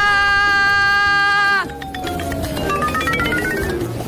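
A woman's long, high-pitched 'aaah' yell, held on one steady pitch, that cuts off sharply about one and a half seconds in. It is followed by comic sound effects: a slow falling glide under a rattle of quick clicks.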